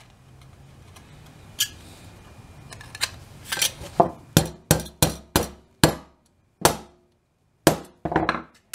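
Ball-peen hammer striking heavy steel wire on a wooden workbench: a series of sharp metallic taps, about three a second in the middle, then a few spaced strikes.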